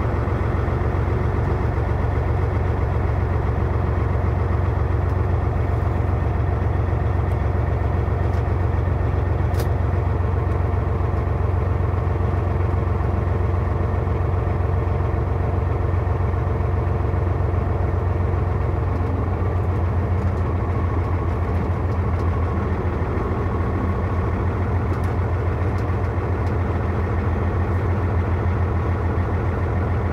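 A heavy truck's engine running steadily at low speed, heard from inside the cab, with a strong low hum.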